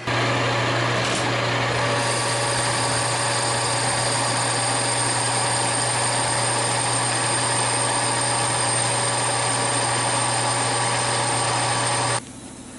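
Metal lathe running with a boring bar cutting the inside of a steel ring: a steady, even machine noise with a low hum. A thin high whine joins about two seconds in and holds.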